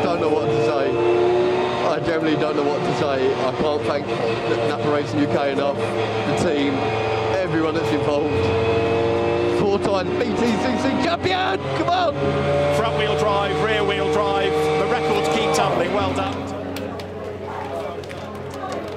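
A racing touring car's engine running on track, heard onboard, mixed with excited voices shouting and cheering. The sound drops noticeably near the end.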